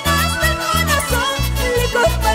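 Live band of guitars and wind instruments playing Camilaca carnival dance music: a pulsing, evenly repeating bass line under a wavering melody.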